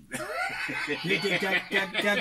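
A man laughing into a studio microphone, a run of chuckles mixed with a few words.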